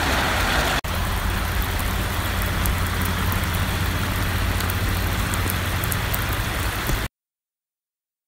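Heavy rain pelting a flooded asphalt skating track: a steady hiss with a fine patter of drops over a low rumble. It cuts off suddenly about seven seconds in.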